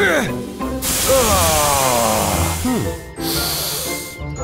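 A loud steam hiss for about two seconds, with a voice letting out a long, slowly falling 'ahh' over it. Background music plays throughout.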